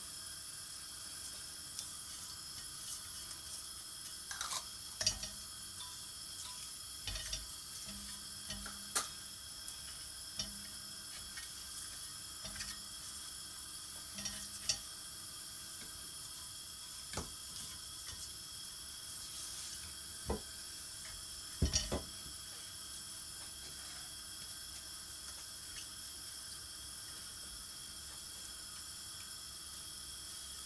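Cumin seeds, cardamom pods and a bay leaf frying gently in oil in an enamelled cast-iron pot: a faint steady sizzle. Scattered light clicks and taps come as a silicone spatula stirs the spices, mostly in the first two-thirds.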